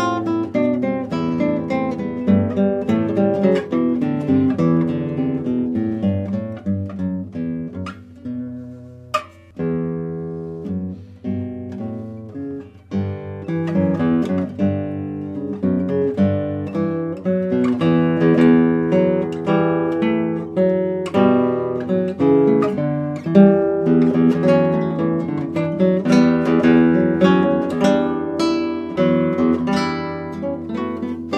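Solo acoustic guitar playing a busy run of plucked notes and chords. The playing thins to a brief lull about eight seconds in, comes back with a sharp chord, and grows louder and denser in the second half.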